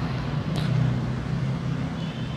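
A steady low background hum with a faint click about half a second in.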